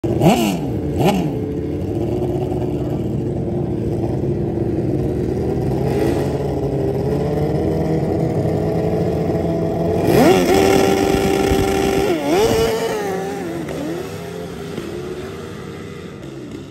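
Street-bike-engined drag ATVs at the start line: two quick revs, then the engines held at a steady note. About ten seconds in they rev sharply to a high held pitch as they launch, with a short dip and rise about two seconds later like a gear shift, and the sound falls and fades as they run away down the strip.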